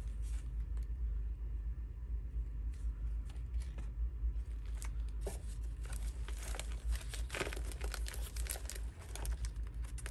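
Paper cards and envelopes rustling and scraping as fingers flip through a tightly packed box of paper ephemera, with scattered short crisp ticks, over a steady low hum.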